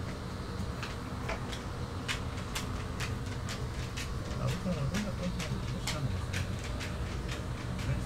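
Laptop keyboard keys clicking in irregular single taps as a scan tool's menu is paged through, over a steady low hum. Faint voices come in about halfway through.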